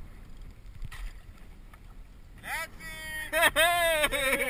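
Wind and water noise on the kayak-mounted camera, then from about two and a half seconds in a person shouting loudly in long calls that slide up and down in pitch.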